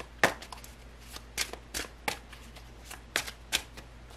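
Tarot cards being handled by hand: a deck shuffled and a card drawn and laid on the table, giving a string of sharp, irregular card snaps and slaps.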